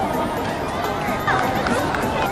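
High-pitched children's voices and spectators calling out across an outdoor football pitch, over a steady background of crowd chatter.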